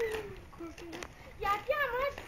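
Children's voices: a high child's voice falling in pitch at the start, short bits in the middle, and a longer high-pitched call in the second half.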